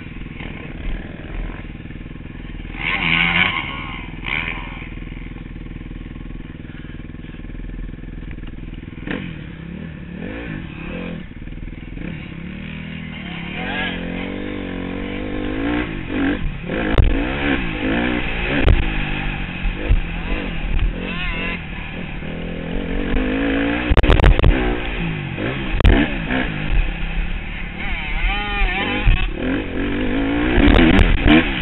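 Dirt bike engine heard from a camera on the bike, running steady at first, then revving up and falling back again and again from about a third of the way in as the bike accelerates and slows along the track. A burst of heavy knocks and clatter comes about four-fifths of the way in.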